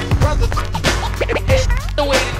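1993 hip hop track: a drum beat and a low bass line with DJ turntable scratching, short pitch sweeps rising and falling over the beat.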